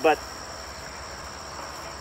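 Crickets singing in a steady, high-pitched chorus, with no breaks.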